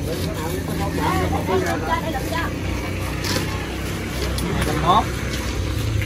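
Indistinct talking among several people, with a steady low rumble of traffic behind it.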